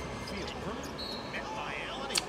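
Basketball game sound from a TV broadcast: a ball bouncing and players moving on a hardwood court, with a few short high squeaks about a second in. Faint commentary runs underneath.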